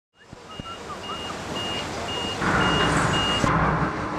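Backup alarm on construction machinery, beeping steadily about twice a second at one pitch. Heavy machinery starts running louder about halfway in.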